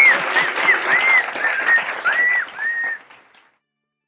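Applause with high, repeated whooping cheers, fading out about three seconds in.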